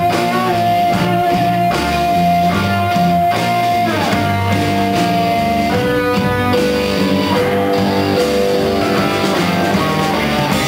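Live rock band playing, led by electric guitar over bass and drums. A high guitar note is held for about four seconds, then slides down, and a new phrase begins about six seconds in.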